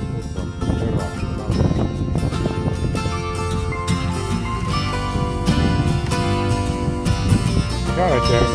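Background music, with held notes coming in about three seconds in.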